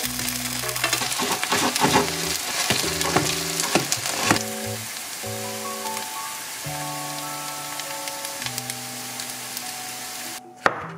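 Oil sizzling under mushroom-shaped potato gnocchi frying in a nonstick pan, with sharp clicks of metal tweezers handling the pieces. It is busiest in the first four seconds or so, then settles to a quieter sizzle, all under background music.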